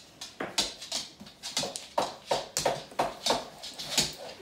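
A dog giving a series of short, sharp whimpers or yips, about ten in quick, uneven succession.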